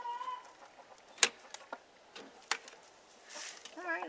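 A hen's drawn-out note trails off at the start. Then the coop's nest-box door is pulled open by its handle, with two sharp knocks about a second and a half apart and a few lighter clicks.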